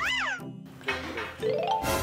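A short meow-like call rising then falling in pitch at the start, then after a brief break a rising run of tones near the end.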